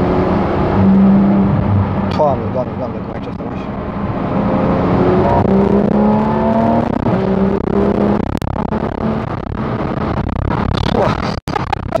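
Porsche 911 GT3 RS (991.2) naturally aspirated flat-six heard from inside the cabin while driving hard. The engine note climbs steadily in pitch between about four and eight seconds in, with drops in pitch around it. The sound cuts out for an instant near the end.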